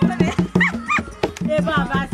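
Hand drum with a peg-tuned skin head, beaten by hand in a fast, even rhythm, with voices calling out over it.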